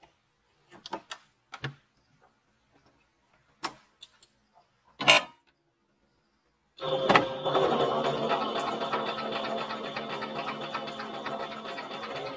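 A few clicks and knocks as fabric and machine are handled, then from about seven seconds in an electric Singer domestic sewing machine running steadily, stitching fabric.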